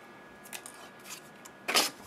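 Quiet handling of a hand-held paper punch and cardstock: a faint tap about half a second in, then one short, crisp rasp of paper near the end.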